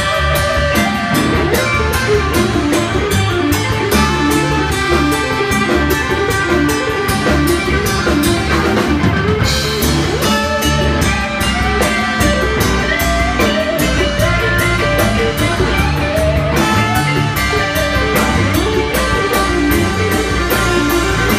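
Live band playing loudly and without a break: electric guitar, bass guitar, drum kit, congas and trumpet.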